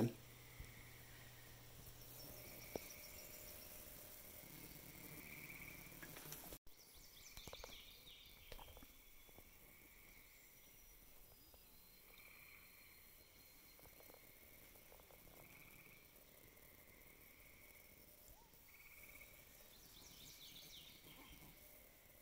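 Near silence: faint outdoor ambience with a soft high chirp repeating about once a second and a few faint bird calls.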